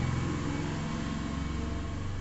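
A steady low mechanical hum, like an engine idling, with no change in pitch or level.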